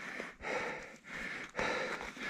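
A man breathing audibly, about three breaths in a row, winded from climbing on foot through deep, soft snow.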